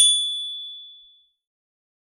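A single high, bright chime sound effect, struck once and ringing out as it fades over about a second.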